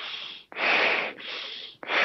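A climber's heavy breathing at the summit of Everest, close to the phone microphone: a loud rush of breath about half a second in, with quieter breaths on either side. The sound is dull and cut off in the highs, coming over a low-bandwidth satellite video call.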